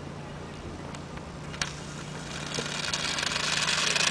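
Foaming Diet Coke jetting from a 0.5 L bottle on a small rocket cart: a click about one and a half seconds in, then a fizzing hiss that grows steadily louder as the spray drives the cart along.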